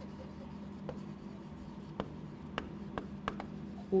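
Chalk writing on a chalkboard: quiet strokes with several short, sharp taps as the chalk meets the board, over a faint steady hum.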